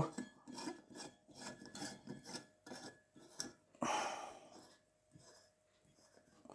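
Stainless steel Edison 40 screw cap of a 250-watt mercury vapour bulb being screwed into a ceramic E40 lamp holder: a series of short, faint scraping rasps, then a louder scrape about four seconds in as it seats tightly.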